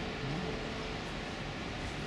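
Steady background hum of distant city traffic.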